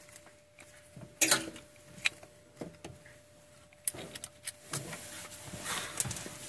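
Scattered light clicks and scrapes of a hand tool working the hold-down screw on a turbocharger's VGT actuator, a few separate ticks spread about a second apart, with a faint steady thin tone underneath.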